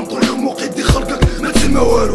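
Hip hop beat of a Moroccan rap song, with a steady kick-drum pulse. The bass drops out and comes back in about one and a half seconds in.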